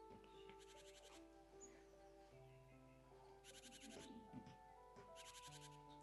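Faint, slow relaxing background music of long held notes, with three short, rapid, high bird trills mixed in.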